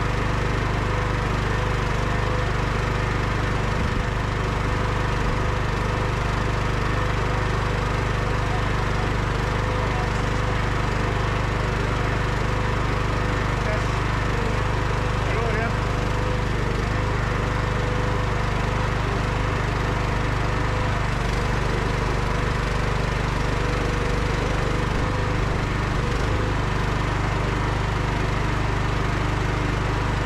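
Engine of a Bossworth firewood processor running steadily at an even pitch, with no cutting or splitting strokes standing out.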